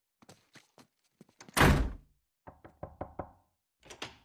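A door slams shut about one and a half seconds in, followed by a quick run of about six knocks on a wooden door.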